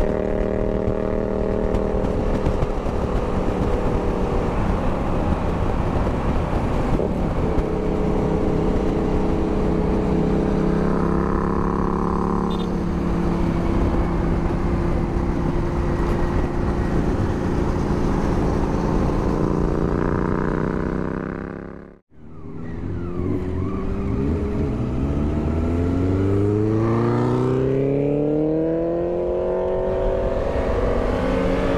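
Honda Africa Twin 1000's parallel-twin engine running at a steady highway cruise, with wind and road noise. About three-quarters through, the sound cuts out for an instant, then the engine note rises steadily as the bike accelerates.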